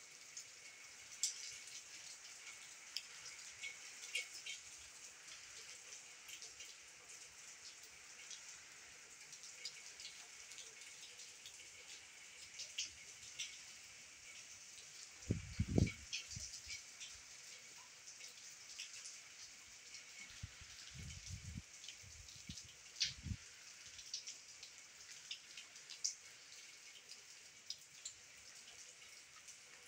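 Rain falling on a glass canopy roof and garden foliage: scattered drop ticks over a steady quiet hiss. A few low thumps come about halfway through, the loudest of them, and a few more follow later.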